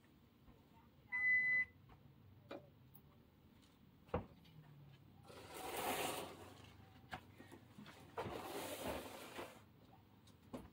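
A single short electronic beep about a second in, then a few knocks. Two long rustling swishes follow as a fabric curtain is pulled and taken down from its rod.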